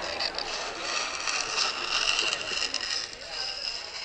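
Fingernails scraping down a chalkboard: a high, drawn-out screech that fades near the end.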